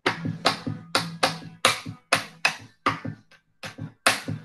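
An improvised batucada beaten out by hand: a run of sharp slaps in an uneven, syncopated rhythm, about three a second, with a low steady hum underneath.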